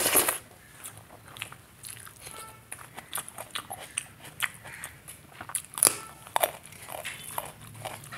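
Close-miked eating by hand: wet chewing and lip smacking on a mouthful of rice and ridge-gourd curry, with many sharp clicks. The loudest moments are at the start and about six seconds in. Fingers squish and mix rice and curry on a steel plate.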